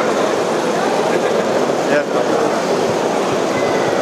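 Steady background chatter of many people talking at once, with no single distinct event standing out.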